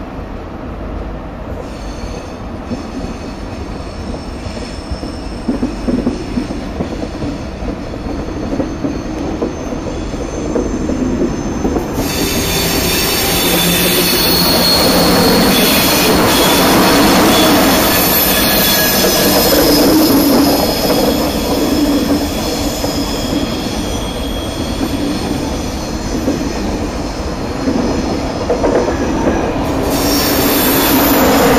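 A TGV high-speed trainset rolling slowly past along the platform with its wheels squealing on the rails. The squeal grows louder and harsher about twelve seconds in and stays so as the coupled sets go by.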